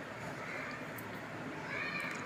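Faint, drawn-out cries that rise and fall in pitch, about three in a row, over the soft sound of hands working flour and oil together in a steel bowl.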